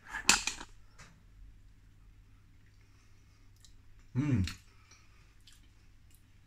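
A man tasting a mouthful of baked beans: a brief clatter of handling noise a fraction of a second in, quiet chewing, then a short appreciative "mm" falling in pitch about four seconds in.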